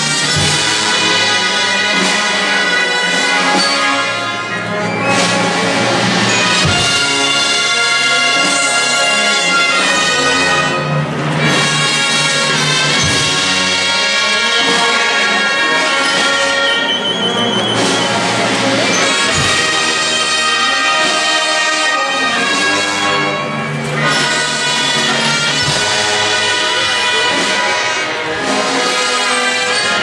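Guatemalan procession brass band playing a slow funeral march, trumpets and trombones holding full sustained chords, with a few low drum beats.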